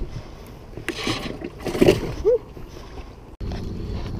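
Handling noise on a chest-mounted camera in a fishing boat: fabric rubbing over the microphone and a few short knocks and scrapes. About three and a half seconds in, the sound cuts abruptly to a steady low rumble.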